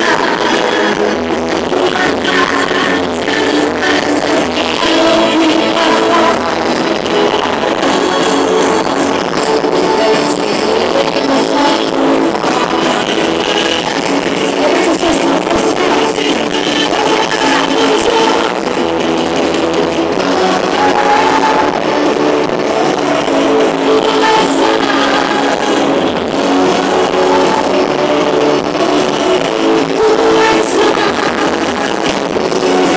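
Live gospel band playing loud and without a break through a stage PA, heard from within the crowd on a phone microphone.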